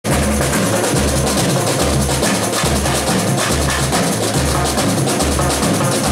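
Samba bateria drumming: deep surdo bass drums beat a steady, repeating pulse under a dense, fast patter of snare drums struck with sticks.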